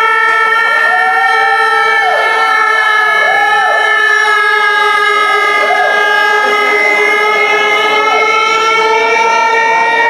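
A performance soundtrack playing over a club sound system: a loud held tone of several stacked notes stays at one pitch, with short swooping notes beneath it in the middle.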